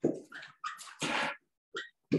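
A man chuckling in short, breathy bursts.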